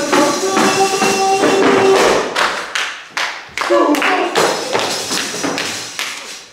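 Tambourine struck and shaken in a quick, uneven rhythm of sharp hits, with voices singing along, a held note in the first second and a half.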